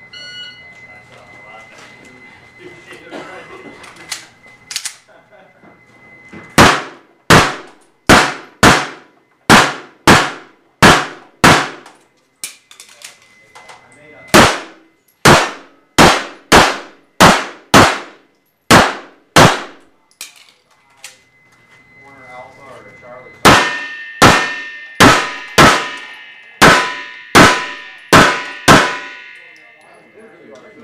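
A shot timer gives a short start beep, then a Tanfoglio Stock II 9mm pistol fires about 26 shots in three quick strings. The shots come roughly half a second to a second apart, with pauses of two to three seconds between strings. Each shot is followed by a short echo from the indoor range.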